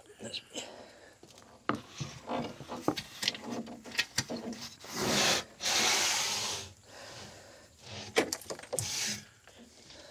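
Dry rodent-nest debris (sticks and straw) being scraped and pulled out of a truck's air intake by a gloved hand: irregular rustling and scratching with sharp clicks, and a louder rush of rustling for about a second and a half around the middle.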